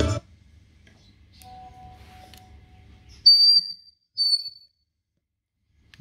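Keyboard music from the GMC 897H portable speaker cuts off right at the start. After a faint lower ring, two short, loud, high-pitched squeals come about a second apart, each lasting about half a second. This is acoustic feedback from a wireless microphone pointed at the speaker.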